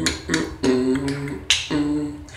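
Beatboxing: hummed bass notes, each held about half a second, broken by sharp percussive clicks in a loose beat.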